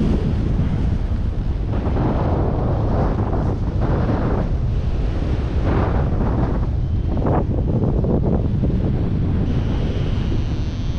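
Wind rushing over the camera microphone in paraglider flight: a steady loud buffeting with stronger gusts swelling up several times.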